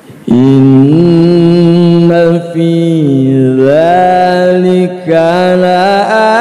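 A male qari reciting the Quran in a slow, melodic chant into a handheld microphone, with long held notes that step up and down and waver in pitch. The voice starts just after the beginning and pauses briefly for breath about two and a half and five seconds in.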